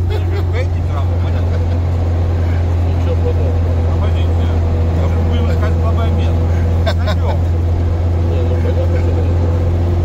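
Steady low drone heard inside the cabin of a moving off-road vehicle: engine and drivetrain hum with road noise, unchanging in pitch and level.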